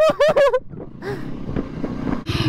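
A short burst of laughter, then the low, steady running noise of a Honda CRF300 single-cylinder motorcycle being ridden.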